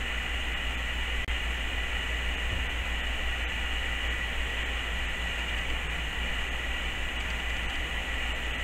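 Steady background hiss with a low hum underneath: constant room or recording noise, with no distinct events.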